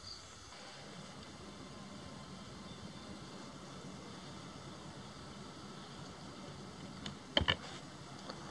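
Faint, steady background hum with two or three short clicks about seven and a half seconds in.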